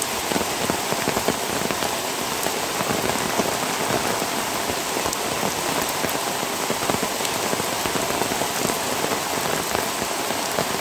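Steady heavy rain, a dense patter of drops striking close by.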